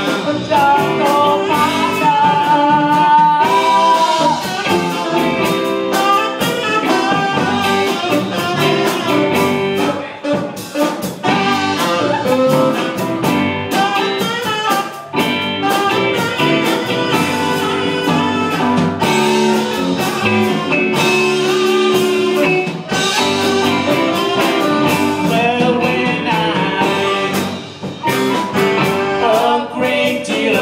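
Live blues/R&B band playing an instrumental passage, with drums, electric guitar and keyboard under wavering lead melody lines from violin and saxophone.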